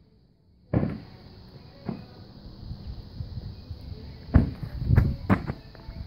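A few dull thumps from running on grass and an inflatable beach ball being kicked, the loudest clustered about four to five seconds in, after a moment of silence at the start.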